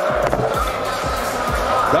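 Arena sound during a shooting round of the three-point contest: background music over crowd noise, with low thuds of basketballs hitting the rim and court.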